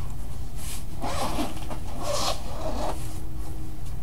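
About four short rasping strokes of handling noise as a card binder is opened and worked, one to three seconds in.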